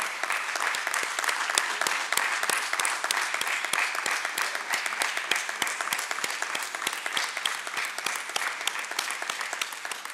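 Applause from a room full of people, many hands clapping at once in a dense, even patter.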